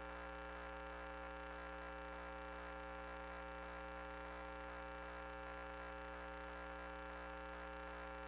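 Steady electrical hum, a stack of unchanging tones with faint hiss, on the audio of a sewer pipe inspection camera system.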